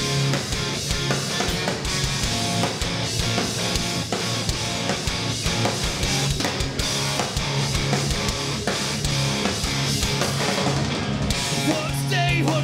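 Live rock band playing loud: distorted electric guitars over a driving drum kit, with no vocals in this stretch.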